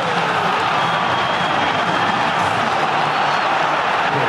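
Steady crowd noise on a football match broadcast, an even wash of many voices. The stands are empty, so it is the artificial crowd track that the broadcaster lays under the match.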